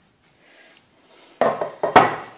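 A quiet first second, then a short clatter of kitchenware ending in one sharp knock: a spoon and a metal muffin tin being handled as the batter cases are finished.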